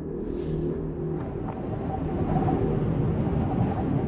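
Soundtrack drone: a low rumble under steady held tones, swelling louder through the second half. A brief hiss sounds near the start.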